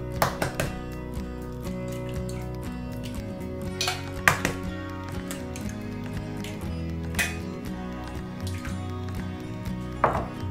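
Background music, broken by a few sharp taps of eggs being cracked against the rim of a small bowl, the loudest about four seconds in.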